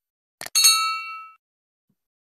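A short mouse-click sound effect, then a bright bell-like notification ding with several ringing tones that fades out within about a second: the click-and-ding effect of a subscribe-button animation.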